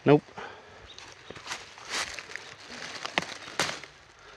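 Dry leaf litter and crumbly rotten wood rustling and crackling as a log is turned over and the debris is moved by hand, with a few sharp crunches. A short spoken word comes right at the start.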